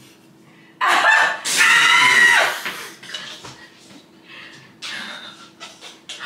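A woman's loud, high-pitched shriek of excited laughter, starting about a second in and lasting about two seconds, followed by a shorter, quieter burst near the end.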